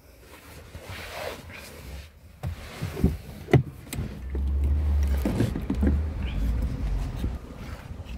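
Handling noise from a handheld phone camera being moved around a car's rear cabin: rustling, two sharp knocks about three seconds in, then a deep rumble lasting a few seconds.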